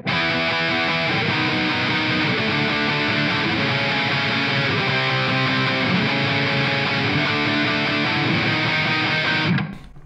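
Electric guitar playing chords over a line that moves one semitone at a time, building tension and resolving; the playing stops abruptly just before the end.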